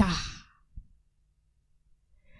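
A woman's voice trailing off into a breathy exhale close to a handheld microphone, fading away within about half a second; the rest is near silence.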